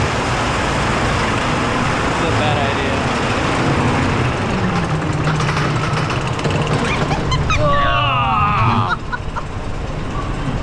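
Wild mouse roller coaster car running along its track: a loud, steady rumble of the wheels with wind noise on a rider-held camera. Near the end a rider's voice breaks in briefly.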